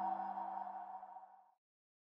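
The ringing tail of a short musical logo sting: a bell-like chord of several steady tones fading away, gone by about one and a half seconds in.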